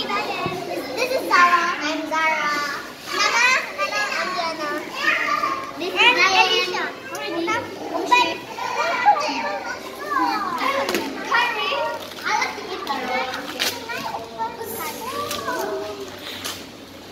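A group of children talking and calling out over one another in high-pitched voices, the chatter continuous and overlapping.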